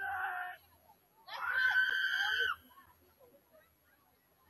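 Shouting at a girls' soccer game. One call cuts off about half a second in. Then comes a long, high-pitched yell lasting about a second.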